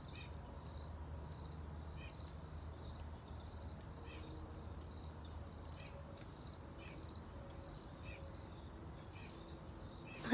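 Faint insect chorus: crickets chirping about twice a second over a steady high drone. A few faint short ticks come and go, which fit acorns dropping from the trees overhead.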